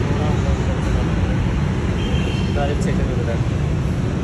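Steady low rumble while riding a moving escalator, with faint voices in the background and a brief faint high tone about two seconds in.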